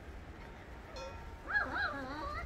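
Puppies yipping during rough play: a couple of high, rising-and-falling yelps starting about a second and a half in.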